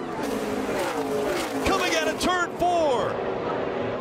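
NASCAR Cup stock cars' V8 engines running past at racing speed across the finish line, their pitch falling as they pass, over a steady crowd roar with excited shouting voices.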